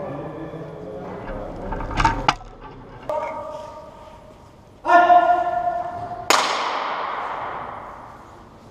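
A few sharp knocks about two seconds in, then two ringing tones that start suddenly and fade, and a loud sharp clash about six seconds in that rings away, all echoing in a large hall.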